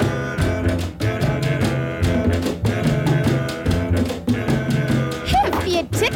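Band music: held chords over a regular beat. Near the end, a voice or instrument slides up and down in pitch.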